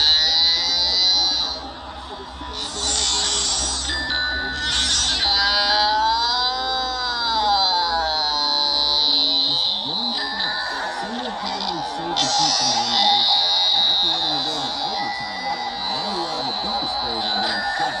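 Music with a voice, played back from a screen, with a steady hiss over it. In the middle comes a long, slowly wavering high tone like a wail, then a voice carries on over the music.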